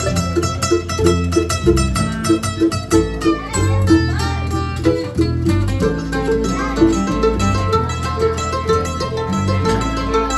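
Acoustic string band playing an instrumental break: a mandolin picking notes over a strummed acoustic guitar, with a steady beat and no singing.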